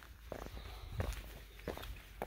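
Footsteps of sneakers on a rough stone-paved path: a few faint steps.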